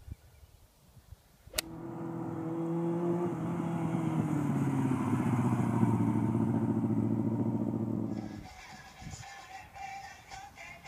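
A sharp click, then a sport motorcycle's engine running as the bike rides along, growing louder, its pitch dropping a few seconds in, before it fades out near the end as music begins.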